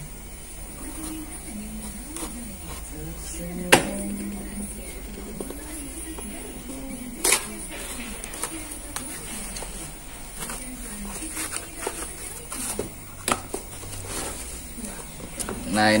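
A cardboard parcel being cut open with a utility knife and opened by hand: scraping and rustling of cardboard and packing tape, with a few sharp clicks, the loudest about four and seven seconds in.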